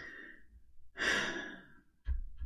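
A person's breath in, then a longer, louder sigh out about a second in.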